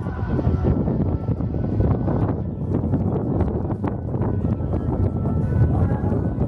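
Wind rumbling on an outdoor camera microphone, with music playing in the background.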